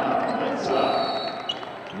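Basketball court noise during live play: a steady arena hubbub, with a brief high sneaker squeak on the hardwood about half a second in and a light tap near the end.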